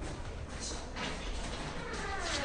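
A wooden door creaking as it swings open, the creak growing louder towards the end.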